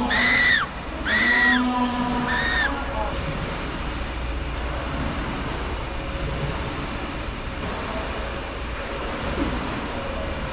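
Humboldt penguin chick giving three short, high, arching peeps in the first few seconds, then a steady background hum with no calls.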